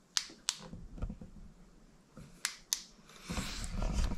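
Handlebar light bar switch on a quad being clicked, two quick clicks just after the start and two more about two and a half seconds in, followed by a rustle of the camera being handled near the end.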